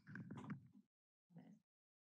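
The tail of a spoken phrase in the first second, a brief faint vocal sound a little later, and otherwise near silence from a noise-gated feed.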